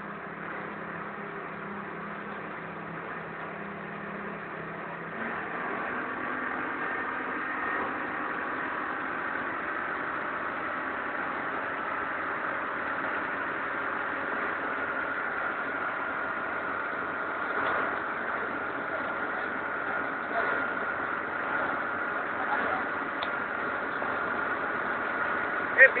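Steady outdoor background hum with indistinct voices, growing a little louder about five seconds in.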